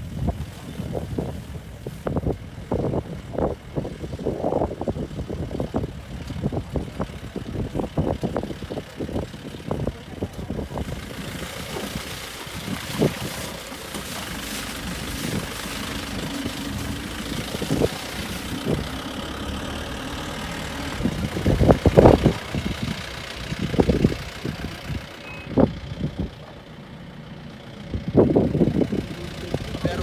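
Safari jeep engine running as the vehicle drives over a rough dirt track, with frequent knocks and rattles from the bumps and a louder jolt about two-thirds of the way through.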